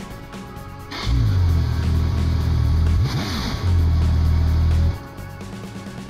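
Audi S4 twin-turbo V6 starting about a second in, running steadily for about four seconds with a brief dip in the middle, then switched off, just after its cylinder-five coil pack was replaced. Background music plays throughout.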